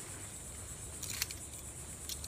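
Steady high-pitched insect chirring, with a few faint handling clicks and rustles from a cord loop and poncho fabric about a second in.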